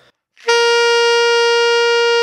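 Alto saxophone playing a single sustained upper-register G, fingered with three left-hand fingers and the octave key, as a note of the A blues scale. The note starts about half a second in and is held steadily at one pitch.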